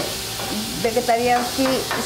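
Marinated chicken pieces frying on a hot flat-top griddle beside warming flour tortillas, a steady sizzle.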